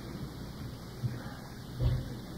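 Steady hiss and low rumble of an old recording's background noise between pieces, with a soft low thump about a second in and a louder one near the end.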